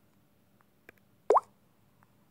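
A single short plop with a quick rising pitch, like a drop falling into water, about a second in, with a few faint ticks around it.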